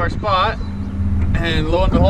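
Short spoken exclamations over the steady low drone of a small boat's outboard motor.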